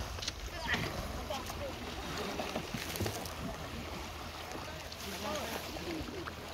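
Indistinct background talk over a steady noise of wind and water.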